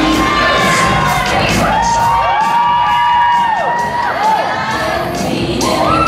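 Audience cheering and whooping, children's voices among them, over a dance track with a steady beat; long drawn-out calls rise and fall in the middle.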